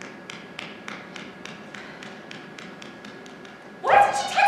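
A steady run of sharp ticks, about three and a half a second, over a faint hum. Loud music with singing cuts in near the end.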